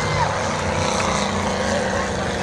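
Steady din of race car engines running on the dirt track, with a murmur from the grandstand crowd.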